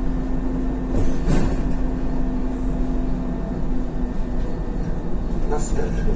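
Isuzu Novociti Life city bus heard from inside the cabin while driving: a steady engine drone and road rumble, with a brief rattle about a second in.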